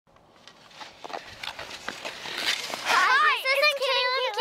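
A child's high-pitched voice in long, wavering, sing-song notes starts about three seconds in, after a run of scattered clicks and scrapes.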